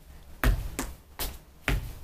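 A dancer's steps and slaps, four sharp smacks and thuds about half a second apart, as she hits her leg and steps in time on a hard studio floor.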